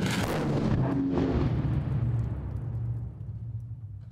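A large test explosion set off in a steel test enclosure: a sudden blast, then a long low rumble that slowly dies away.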